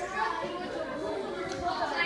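Background chatter of several children talking at once, the words indistinct.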